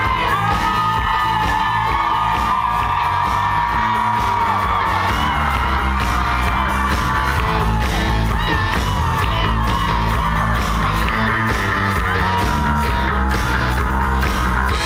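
Live rock band playing at full volume, heard from the crowd in a packed hall: a lead vocal wavers over pounding drums, bass and electric guitars, with yells on top.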